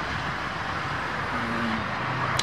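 Steady outdoor background noise, an even hiss with a low rumble, with a short faint hum a little past halfway.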